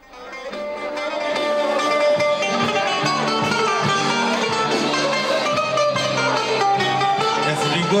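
Live band music led by plucked-string instruments, fading in over the first second or so and then playing steadily with a melodic line.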